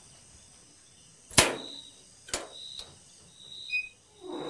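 Two sharp clicks about a second apart from the door's metal bolt being drawn back to open it, with crickets chirping faintly.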